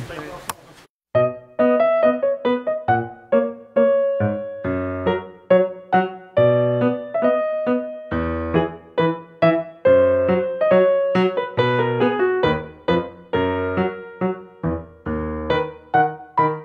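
Solo piano music begins about a second in: a slow melody over chords, each note struck and then fading.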